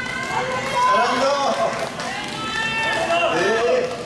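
Voices of several people overlapping, talking or calling without clear words.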